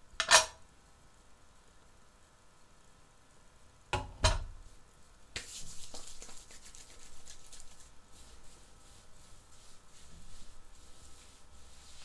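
A pomade tin gives a sharp click near the start and two knocks about four seconds in as it is handled. From about five seconds on, hands rub water-based pomade between the palms with a soft, sticky rustling.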